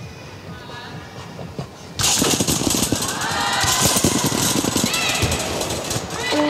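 Arena crowd breaking into loud cheering and clapping about two seconds in, with rising whoops among it, as a gymnast performs a double mini-trampoline pass.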